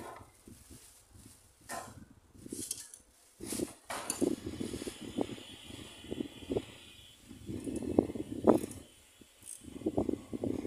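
Irregular knocks, clicks and rustling of hand and tool work on a water booster pump's fittings, with a couple of sharper knocks about four and eight and a half seconds in.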